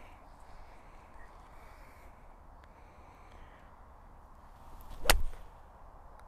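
Golf iron swung at a teed-up ball: a brief whoosh, then one sharp click of the clubface striking the ball about five seconds in, hit as a low stinger shot. Faint open-air background before it.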